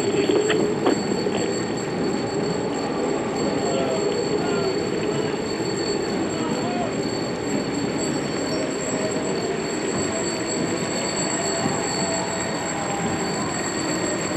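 Steady din of a large procession moving along a street: a continuous mix of many voices and movement, with a few faint wavering tones and a few sharp clicks near the start.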